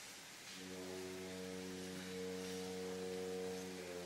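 Opera orchestra holding a soft, low sustained chord with steady, unwavering pitches; it enters about half a second in and moves to a new chord near the end.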